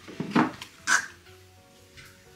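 Two short, sharp sounds about half a second apart, over faint background music.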